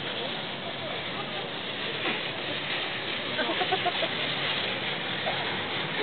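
Steady rushing noise of a moving open chairlift ride, with faint voices briefly about halfway through.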